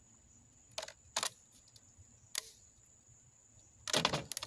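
A few short, sharp plastic clicks and snaps, about a second in, again just after, at about two and a half seconds, and a louder cluster near the end: a solar panel's plastic bezel being pried off with a screwdriver, cracking and breaking up as it comes away.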